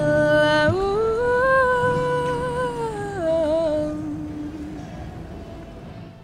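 A woman's voice carries a wordless closing phrase: a held note that slides up, holds, then falls back and stops about four seconds in. Under it the last acoustic guitar chord rings on and fades away.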